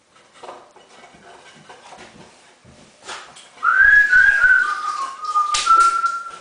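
A person whistling a short run of notes that rise, then step down and settle on a held note near the end. Light metallic clinks and scrapes of plastering tools come before it, with a louder scrape just before the last note.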